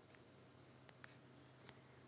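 Near silence: a faint steady room hum with a few soft ticks and light rubbing.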